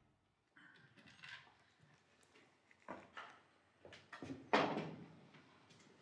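A few quiet knocks and rustles of handling and movement, spaced by near-silent gaps, the loudest about four and a half seconds in and dying away over about a second.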